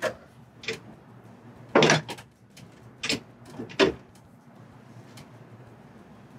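Metal clunks and scrapes as an AUMA SA electric rotary actuator is set down onto a valve's A drive thrust assembly, its coupling grooves engaging the drive's dogs. There are several separate knocks, the loudest about two seconds in.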